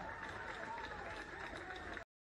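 Faint outdoor ambience of a football pitch: distant players' voices calling out over a low steady background hiss.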